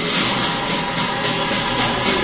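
Film-trailer music playing from a television, loud and dense, with a rapid run of percussive hits about four a second.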